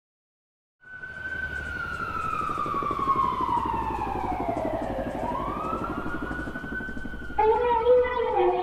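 Opening of a K-pop track: after a second of silence, a siren-like sound effect makes one long glide down in pitch and back up over a low drone. The song's beat and melody come in near the end.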